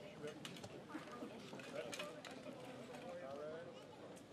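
Faint background chatter of several voices at a distance, with a few light clicks scattered through.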